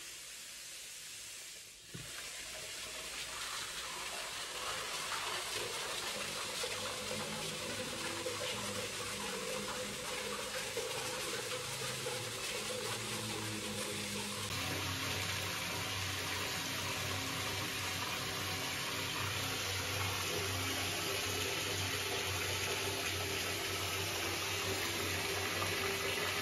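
Tap water running from a bathtub spout into the tub, a steady splashing rush that steps up about two seconds in and grows a little louder as the tub fills.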